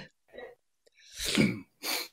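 A man's short, breathy burst of voice about a second into a pause, followed by a briefer one near the end.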